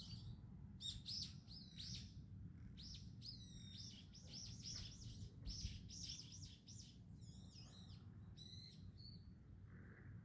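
Small birds chirping faintly, with quick high calls coming in clusters over a low, steady background rumble.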